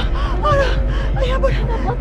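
A woman's short, pained moans and gasps, several in a row, as she doubles over clutching her stomach, over background music.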